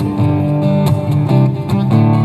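Cutaway acoustic guitar strumming chords, with no voice over it.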